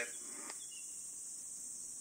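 A faint, steady high-pitched hiss, even and unbroken, in a pause between spoken lines.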